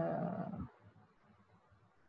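A person's drawn-out hesitation sound "euh", lasting under a second, followed by faint room tone.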